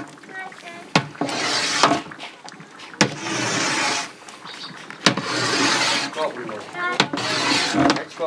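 Long wooden paddle stirring thick, hot pomegranate paste in a large metal cauldron: a knock about every two seconds, each followed by a swishing scrape through the paste.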